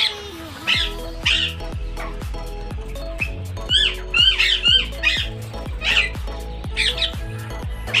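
A large green parakeet squawks over and over, roughly one or two harsh calls a second, with a quicker run of rising calls around the middle. Background music with a steady bass plays underneath.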